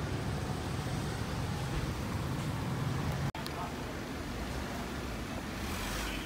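Steady outdoor street noise with a low hum of vehicle traffic. It breaks off for an instant a little past halfway, then carries on.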